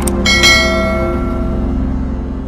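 Bell-like chime sound effect, struck twice in quick succession near the start, its tones ringing on and fading away over about a second and a half above a steady low rumble.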